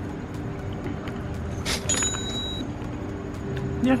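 Steady low hum of city road traffic, with a short noisy burst a little before two seconds in.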